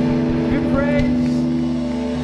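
Live band of electric guitars, bass and drums holding a sustained chord, with a voice heard briefly over it about half a second to a second in.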